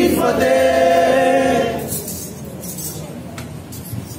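Sikh devotional kirtan singing, the voices holding long notes, fading away about two seconds in and leaving a quieter background with a few faint clinks.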